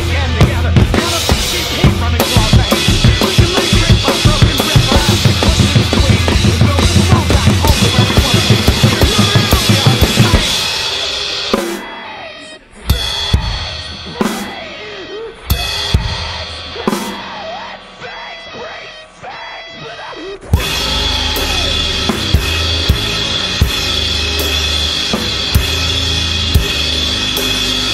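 Two live drum kits playing along to a heavy band recording: fast, dense kick and snare hitting with the full band. About ten seconds in it drops to a sparser, quieter passage with scattered hits, and the full band and drums come crashing back in about nine seconds later.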